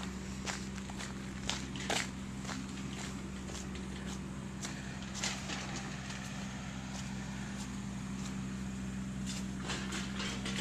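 Footsteps walking at an uneven pace, a few louder steps about one and a half, two and five seconds in, over a steady low engine drone that holds at an even pitch throughout.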